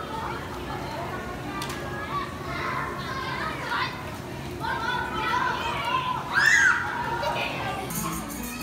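Children's voices talking and calling out among other children at play, one high child's voice loudest about six and a half seconds in.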